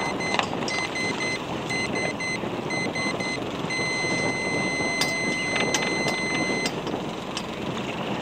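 Electronic timer beeping: short high beeps in a quick repeating pattern, then one steady tone held for about three seconds that cuts off suddenly. Steady wind and water noise runs underneath, with a few sharp knocks a little past halfway.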